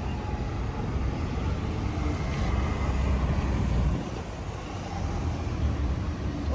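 Outdoor background noise: a low, fluctuating rumble with no distinct events.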